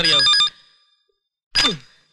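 Push-button desk telephone ringing in a fast electronic trill, stopping about half a second in, then one short ring again near the end.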